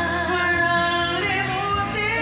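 A woman and a man singing a duet into microphones over a karaoke backing track, with held, gliding sung notes.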